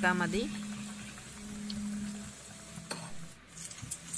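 Batter-coated ripe jackfruit pieces deep-frying in hot oil, with a steady soft sizzle of bubbling oil. There is a single sharp click about three seconds in.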